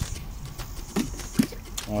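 Low, steady outdoor background with two short voice sounds about a second in, and a light knock shortly before the end.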